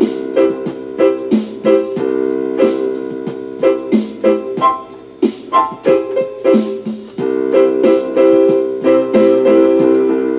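Electronic keyboard played with both hands: a run of struck chords and notes, softer for a couple of seconds around the middle before picking up again.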